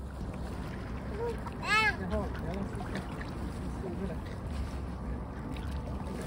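Wind rumbling on the microphone at the lake's edge, with a few short, pitched calls over it. The loudest call, rich and arching in pitch, comes a little under two seconds in.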